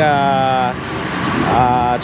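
Steady road-traffic noise, with a man's long, held "uhh" of hesitation at the start and a shorter one near the end.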